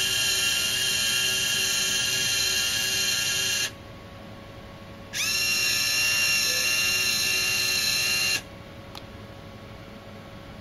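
Small electric drive motors of a hobby robot whining steadily as it drives forward, stopping a few seconds in. A second and a half later they start again with a brief rise in pitch and run about three seconds as it drives backward.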